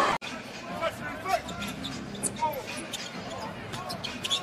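Basketball being dribbled on a hardwood arena court, with a low murmur of crowd and arena noise and scattered short squeaks and ticks. The sound drops out briefly at an edit just after the start.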